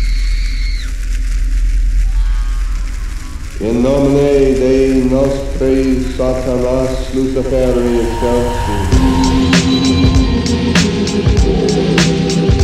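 Instrumental intro of a hip-hop track: a deep bass drone, joined a few seconds in by a melodic line that slides up and down in pitch. A steady drum beat comes in about two-thirds of the way through.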